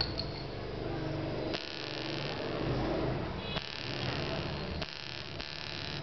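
Handling noise as a đàn môi (Vietnamese jaw harp) is drawn out of its tubular case: three hissy bursts of rubbing and scraping over a low steady hum.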